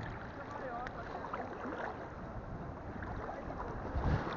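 Sea water lapping and wind rumbling on an action camera's microphone held at the water's surface, a steady low rush, with faint voices far off.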